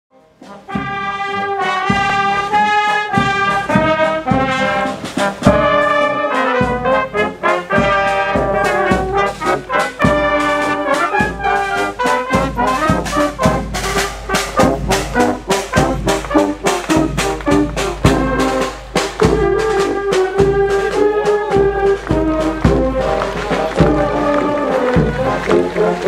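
Brass band playing a march tune, with a drum keeping a steady beat.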